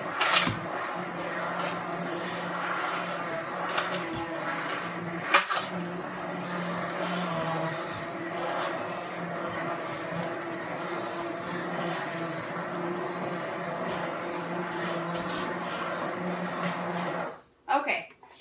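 Immersion blender motor running steadily while puréeing chunky cooked squash soup in a pot, with a churning sound and a sharp knock or two. It cuts off suddenly near the end.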